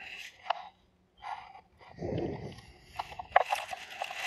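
Faint handling noises from a hand-held RC radio transmitter: a few short plastic clicks and rustling, with a soft rushing sound about two seconds in.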